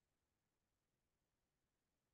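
Near silence, with no sound in the audio.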